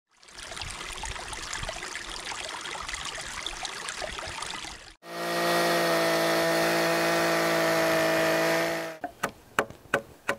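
A crackling hiss for the first half, then a Stihl chainsaw running at a steady high speed for about four seconds before it cuts off. It is followed by short scraping strokes, about three a second, of a slick paring wood out of a log pocket.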